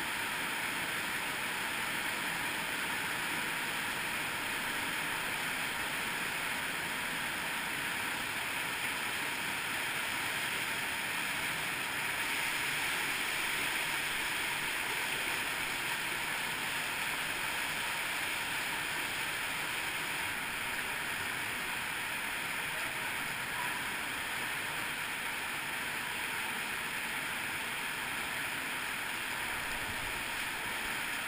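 Cave streamway running over small waterfalls and cascades: a steady rush of water.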